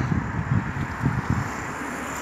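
Wind buffeting the microphone while moving along the street, an irregular low rumble with a faint background of city traffic.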